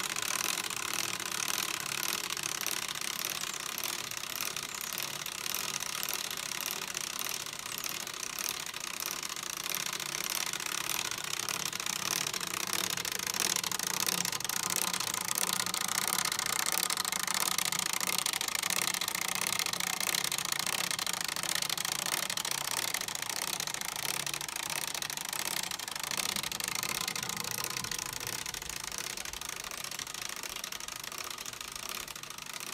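Laser-cut basswood pump jack model running, its wooden gears and toothpick axles making a steady, fast mechanical clatter.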